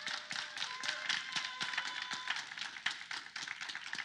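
Congregation clapping in praise, many hands in a quick irregular patter, with a few faint voices calling out.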